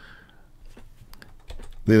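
About five or six light clicks of computer input in quick succession, about a second long, as the moves of a chess game are stepped through on screen.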